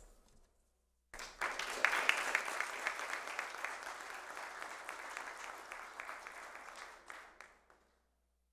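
A seated audience applauding. It starts about a second in, is strongest just after it begins, and then dies away gradually, stopping shortly before the end.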